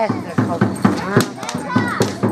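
Children's voices shouting excitedly, one yelling 'es!', over a string of sharp, irregular knocks or slaps about two to three a second.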